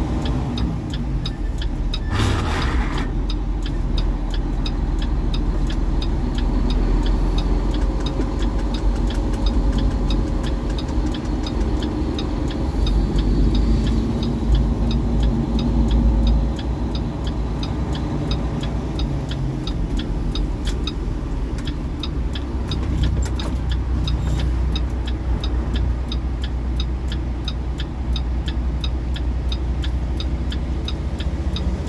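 Truck engine running, heard from inside the cab as it pulls out of a gravel lot and onto the road: a steady low rumble with a regular ticking over it. A short burst of hiss about two seconds in.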